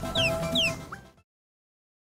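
End-card background music with two short high falling chirp-like sounds and a brief rising one over a held note; it fades and cuts off about a second in, then silence.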